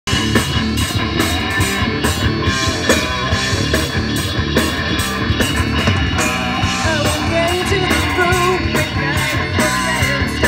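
Live rock band playing: electric guitars, electric bass and a drum kit, loud and steady.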